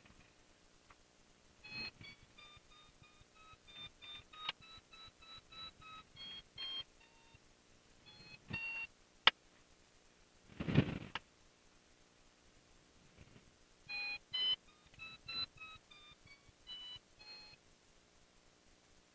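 Runs of short electronic beeps at several different pitches, one run a couple of seconds in and another near the end. A sharp click and a brief dull thump fall between them.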